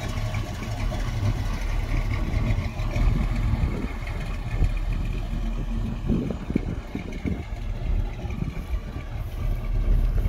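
1966 Chevrolet pickup truck's engine running steadily at low revs as the truck drives slowly away.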